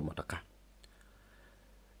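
A man's narrating voice ends in the first half-second, followed by near silence broken by a single faint click just under a second in.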